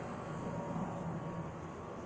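Steady low hum and hiss of background noise, with no distinct event standing out.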